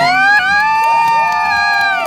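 A person's long, high-pitched cheering whoop, one held note that rises at the start and is sustained for nearly two seconds, with a second, fainter voice briefly joining about a second in.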